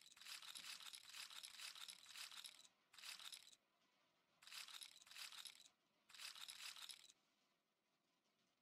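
Four bursts of hissing, rustling noise made of many fine clicks. The first lasts nearly three seconds and the later three about a second each, with quiet gaps between.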